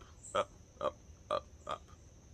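A man's voice making four short clipped sounds, about one every half second, with crickets trilling steadily behind.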